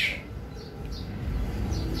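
Faint, brief bird chirps in the background over a low rumble that grows louder from about the middle on.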